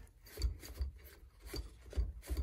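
Faint metal-on-metal rubbing and scraping as a nut is turned by hand along the threaded end of a tie rod, with a few soft knocks.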